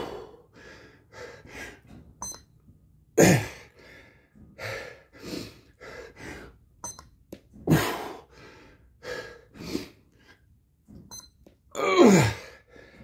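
A man's loud, falling grunts of effort about every four and a half seconds as he presses up from slow push-ups, deep in a 107-rep set, with heavy breathing between. A short electronic beep from the push-up counter comes just under a second before each grunt.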